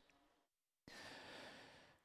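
Near silence, then a man's faint breath in lasting about a second, starting a little under a second in, just before he speaks again.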